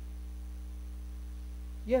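Steady low electrical mains hum in the audio, with no other sound until a man's voice comes in near the end.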